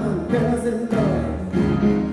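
Live music: solo piano playing chords, with singing over it.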